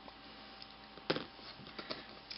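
Quiet room hiss broken by small handling sounds: one sharp click about a second in, then a few lighter clicks near the end as a pair of scissors is picked up from the table.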